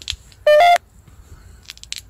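A short electronic beep from a handheld mobile device, about a third of a second long, in two tones stepping up in pitch. A few faint clicks follow near the end.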